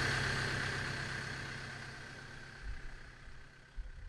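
New Holland T3030 tractor engine idling steadily, fading out gradually, with a couple of low thuds near the end.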